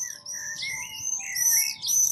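Songbirds singing: a quick, continuous run of high chirping phrases that swoop up and down in pitch.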